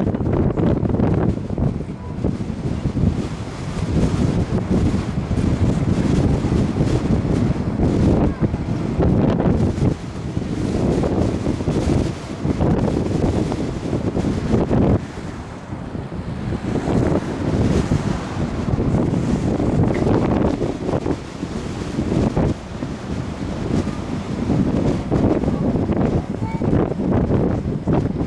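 Wind buffeting the camera's microphone, a heavy low rumble that swells and drops in uneven gusts.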